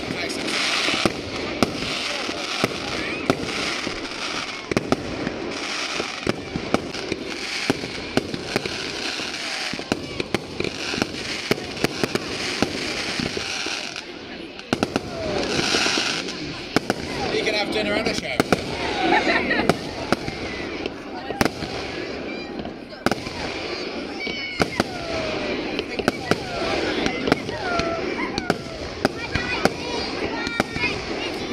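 Aerial fireworks display: dozens of sharp bangs at irregular intervals over a continuous crackling hiss of bursting shells, which swells for a moment about halfway through.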